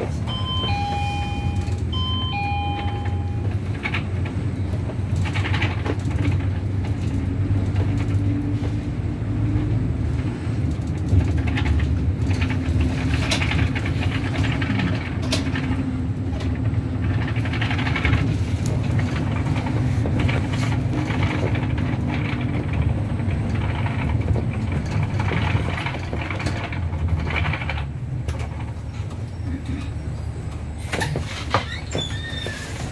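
City bus engine drone and road noise heard from inside the cabin, steady throughout. A two-note electronic chime sounds twice in the first few seconds, from the bus's on-board bell.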